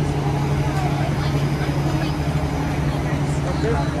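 Busy city street traffic: a steady low hum of vehicles, with passers-by talking faintly over it.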